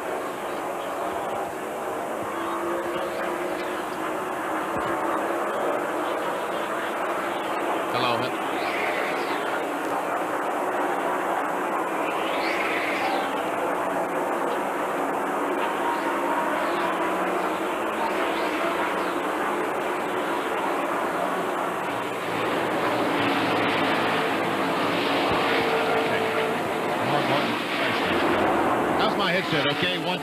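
NASCAR Winston Cup stock cars' V8 engines running at racing speed around the oval, with cars passing and their pitch rising and falling as they go by.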